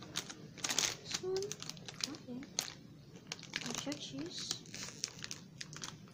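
Plastic Doritos chip bags crinkling again and again as hands pick through and handle them, with brief snatches of voice in between.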